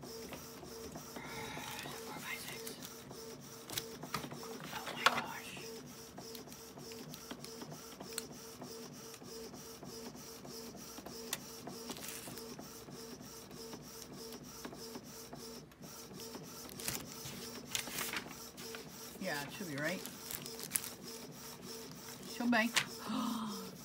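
Canon PIXMA G3270 MegaTank inkjet printer printing a photo: the print-head carriage and paper-feed motors run with a steady, evenly pulsing whir and rapid regular ticking as the photo paper advances.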